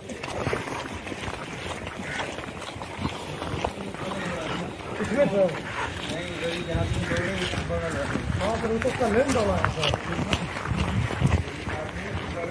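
Men's voices talking in the background over footsteps on a gravel track as a group walks along.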